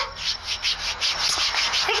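Hands rubbing briskly on skin in quick rhythmic strokes, as a young woman chafes the feet of an unconscious elderly woman to revive her.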